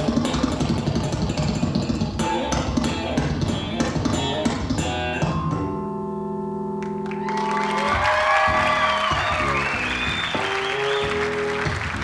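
Electric bass guitar playing a fast run of plucked notes, then a held chord about halfway through, then single notes again.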